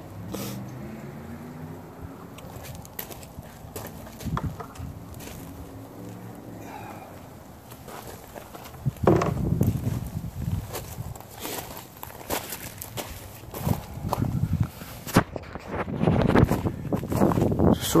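Footsteps crunching on gravel, with scattered clicks and handling knocks and one sharper, louder knock about nine seconds in.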